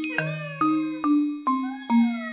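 Background music: a light melody of bright, bell-like struck notes, about two or three a second, each ringing out briefly before the next.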